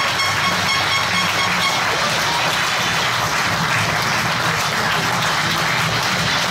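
Small crowd applauding steadily, a dense wash of clapping.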